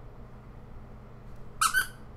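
A short, high-pitched double squeak near the end, two quick notes in rapid succession, over a faint steady hum.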